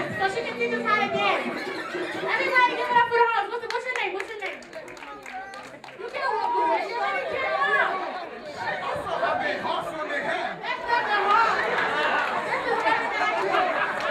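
Several people talking and calling out through handheld microphones over crowd chatter; music underneath ends about a second in.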